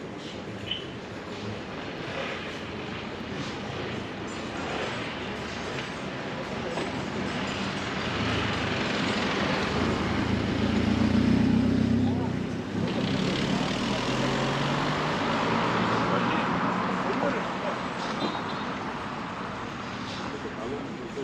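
Outdoor street ambience: background voices of people at café tables mixed with road traffic, swelling to its loudest about halfway through.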